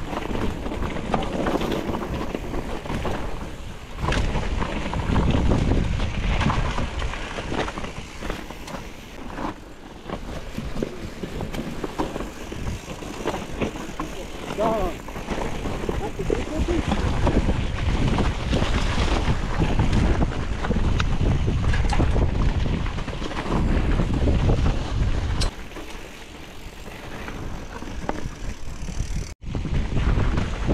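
Wind buffeting the microphone of a camera riding on a titanium hardtail mountain bike as it rolls down a dirt and rock singletrack, with tyre noise and small rattles and knocks from the bike over the bumps. The wind noise swells and eases through the run, and the sound cuts out briefly near the end.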